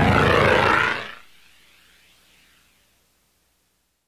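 A jet-like whooshing sound effect, used as the punchline for what breaking wind "sounds like", holding loud for about a second and then fading out.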